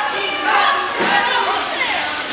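Several people shouting at once, overlapping calls from the pool side that echo in an indoor swimming pool hall.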